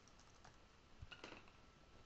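Faint computer keyboard typing: a few quick keystrokes, mostly clustered about a second in.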